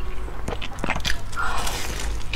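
Close-miked eating of a glazed, filled bread roll: chewing with a few short crackles of crust, then a denser crackling as the roll is bitten into near the end.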